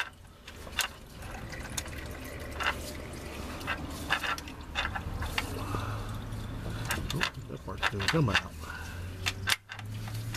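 Scattered light clicks and taps of metal transmission parts being handled and worked by gloved hands, over a steady low hum. About eight seconds in there is a brief vocal sound that slides in pitch.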